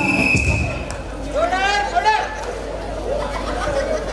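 Recorded music stops within the first second. A voice shouts, then a crowd of people talks and calls out.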